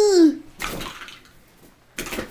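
A young boy's long, loud yell ends shortly after the start with a drop in pitch, followed by a short breathy sound. Near the end comes a sudden soft rustle of stuffed toys landing on the carpet around him.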